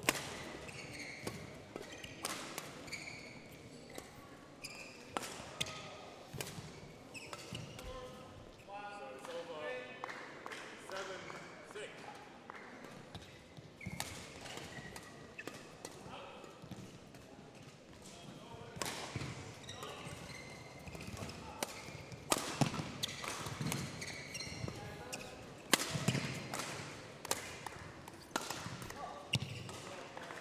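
Badminton play: sharp racket strikes on a shuttlecock, a second or more apart and busiest in the second half, with shoe squeaks and footfalls on the court mat and voices in the background.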